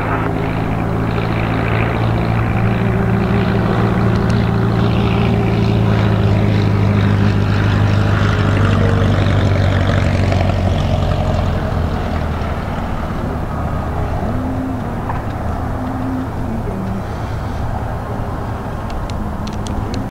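Cessna 140's propeller-driven flat-four engine running as the plane comes in low and lands. It is loudest about halfway through, as it passes closest, then fades as it rolls away down the runway.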